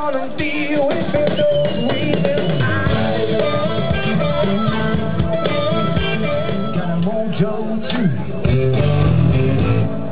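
A blues band playing live: electric guitars and bass over a drum kit in a steady rock beat.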